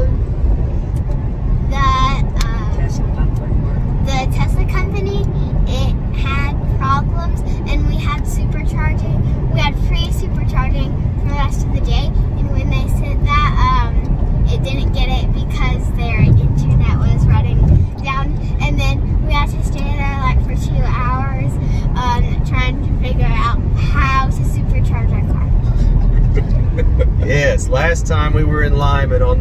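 Steady low road and tyre rumble inside the cabin of a moving Tesla Model 3 Performance, an electric car, so no engine is heard. People are talking over the rumble throughout, and it dips briefly once about two-thirds of the way in.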